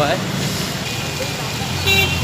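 Steady rumble of street traffic, with a short car horn toot just before the end.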